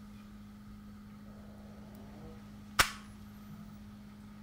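A single camera shutter click about three-quarters of the way in, over a low steady hum.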